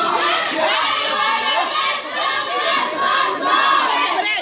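A crowd of women and girls chanting protest slogans together, loudly, with a short break about halfway through.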